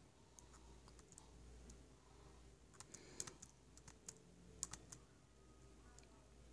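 Faint, scattered clicks of laptop keys over near-silent room tone, a handful at a time, most of them around the middle, as a web page is scrolled down.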